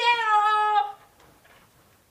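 A long, drawn-out pitched cry, held on one note for most of a second and then cutting off, leaving the rest quiet.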